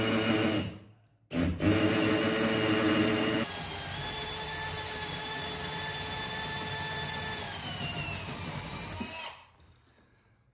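Cordless drill with a long extension bit boring through wooden wall studs. It runs under load, stops briefly about a second in and starts again, then from about three and a half seconds runs lighter and steadier; its pitch falls near the end and it stops about nine seconds in.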